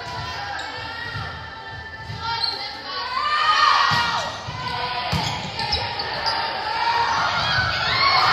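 Indoor volleyball rally in a gymnasium: a few sharp ball hits about four and five seconds in, with players and spectators calling and chattering, echoing in the hall.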